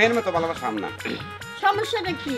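A person's voice speaking rapidly over background music with a repeating bass line.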